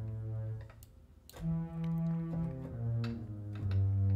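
Sampled low bowed strings from Cakewalk's SI String Section software instrument playing four sustained low notes one after another, with a short gap about a second in. The tone control is set toward a darker sound, leaving the notes dull, with little brightness on top.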